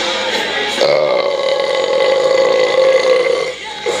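A man belching after a swig of beer: one long, steady burp of about two and a half seconds that starts about a second in and stops shortly before the end.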